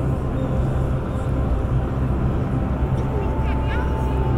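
Indistinct murmur of many visitors' voices over a steady low rumble in the exhibition hall. About three seconds in, a single held tone comes in and stays.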